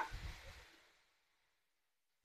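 A steel ladle stirring shredded cabbage in a kadai: a sharp clink against the pan right at the start, then a brief low scraping that fades within the first second, and silence after that.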